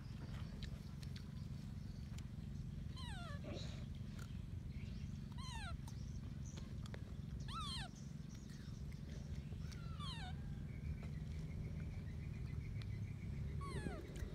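Baby macaque crying: about five high, falling cries, each sliding down in pitch, spaced two to three seconds apart, over a steady low rumble.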